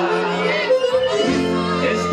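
Live Colombian guitar-band music: acoustic guitars and bass playing sustained notes, with a wavering sung voice over them.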